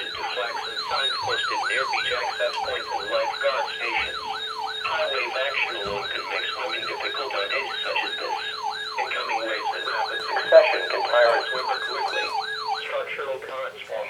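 Electronic siren in a fast repeating wail, each sweep falling in pitch, about three sweeps a second, with a warbling high tone and a steady hum-like tone under it. It stops about a second before the end.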